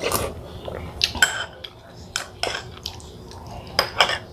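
Metal spoon clinking and scraping against a small ceramic soup bowl while eating, about half a dozen short, sharp clinks at irregular intervals, the loudest a little over a second in.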